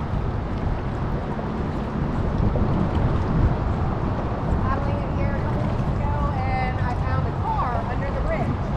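Steady low rumble of wind on a kayak-mounted camera microphone. From about halfway through, a voice talks faintly at a distance.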